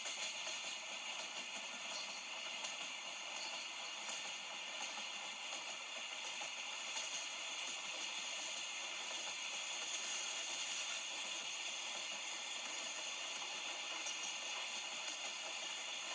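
A steady, even hiss with a few faint constant tones and no distinct events.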